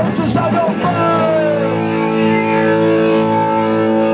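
Live punk rock band through a club PA: shouted vocals for about the first second, then the band holds a steady, ringing electric guitar chord for the rest.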